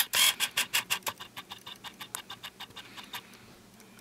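Small plastic Lego pieces clicking and clattering as they are handled: a rapid run of sharp clicks, about ten a second, that fades away about three seconds in.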